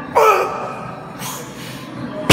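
A man's loud, strained gasping grunt, falling in pitch, as he works through a heavy deadlift rep. About a second later comes a hissing breath.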